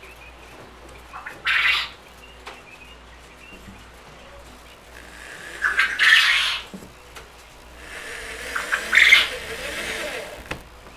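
Coturnix quail calling from their cages in three loud, harsh bursts, about a second and a half in, about six seconds in and near the end.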